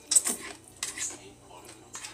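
A person slurping up a mouthful of jjajangmyeon noodles in a few short, wet, hissy bursts, mixed with sharp clicks; the loudest comes just after the start and another about a second in.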